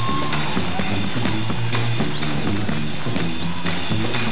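New Orleans brass band playing live: a sousaphone bass line with drum kit and horns, and a high sliding tone in the second half.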